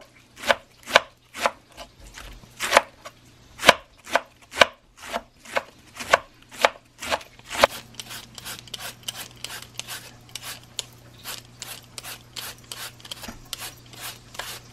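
A cleaver slicing cabbage thin on a wooden cutting board, knocking the board about twice a second. About halfway through, this gives way to a handheld shredder scraping down a peeled taro root, with quicker, lighter strokes.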